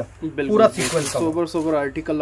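A man speaking Hindi, with a brief hiss a little before the middle.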